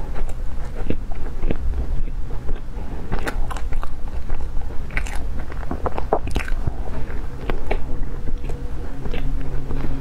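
Close-miked biting and chewing of a thick slice of toasted bread, with many crisp crunches of the crust, thickest through the middle.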